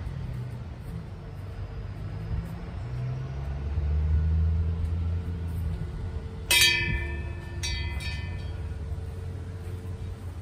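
A small hanging metal bell rung by hand: three strikes, the first about two-thirds of the way in and two more close together a second later, each ringing on with a clear metallic tone. A low rumble, like distant traffic, runs underneath and swells in the middle.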